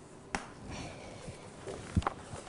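Writing on a board during a pause in speech: a sharp tap about a third of a second in, faint scraping strokes, then a louder sharp tap at the end.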